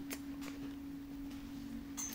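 A steady low hum, one held tone, with a couple of faint clicks near the start.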